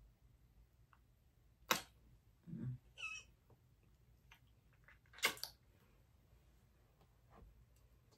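Two sharp lip smacks of a kiss, about three and a half seconds apart, with a brief low hum between them.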